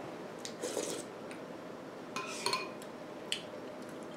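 Metal spoon clinking and scraping against a ceramic soup bowl: several light, sharp clinks spaced out over a few seconds.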